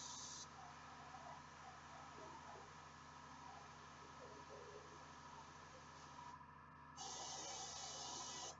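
Faint hiss of an airbrush in short bursts, one stopping about half a second in and another starting about seven seconds in, blowing air to dry each thin layer of red ink before the next coat. Between the bursts there is only a low room hum.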